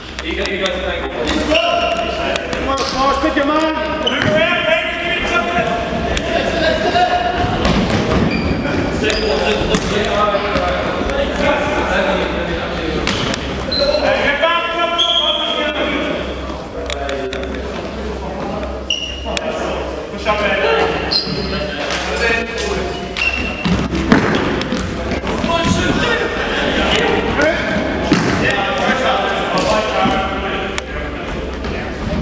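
Futsal game in a sports hall: players' voices calling across the court, with the ball being kicked and bouncing on the wooden floor, all echoing in the large hall. A sharp knock, likely a hard kick, stands out about 24 seconds in.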